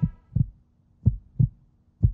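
Heartbeat sound effect: low double thumps, lub-dub, about once a second, laid under the countdown for suspense before the decision, with a faint steady hum beneath.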